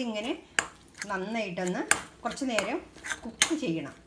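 A metal spatula scraping and knocking against a metal kadai while stirring a thick paste, with three sharp clinks about a second and a half apart.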